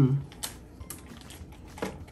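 Light, scattered taps and scratches of a colouring stick on a paper worksheet, with the sharpest tap near the end. A short hummed "mm" fades out at the very start.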